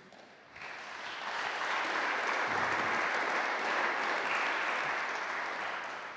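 Audience applauding. The clapping starts about half a second in, builds, holds steady, and dies away near the end.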